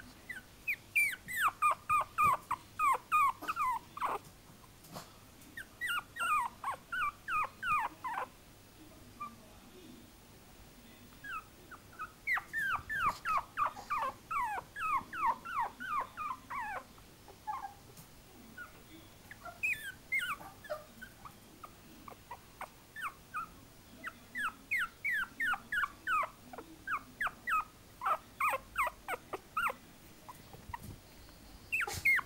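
Three-week-old chihuahua puppy whimpering: runs of short, high squeaks that fall in pitch, about three or four a second, in bursts of a few seconds with short pauses between.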